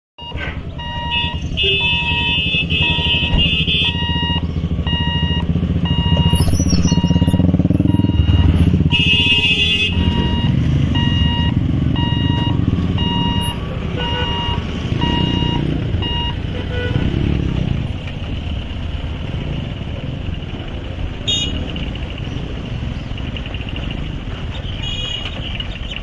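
Motorcycles, cars and light trucks running and pulling away across a railway level crossing as the barriers lift, with short honks of vehicle horns near the start and again in the middle. Over it a repeating electronic warning beep, the crossing's barrier alarm, sounds and then stops about two-thirds of the way through.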